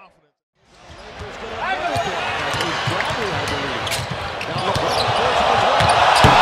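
NBA arena game sound: a basketball being dribbled on the hardwood court over crowd noise that builds toward the end. It opens with a dead drop to silence for about half a second before the sound fades back in.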